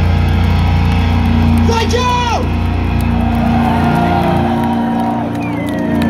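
Live rock band's amplified guitars and bass holding a steady, sustained drone, with a voice shouting briefly about two seconds in.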